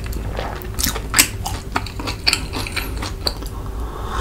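Close-miked chewing of a mouthful of food, with irregular wet mouth clicks and smacks.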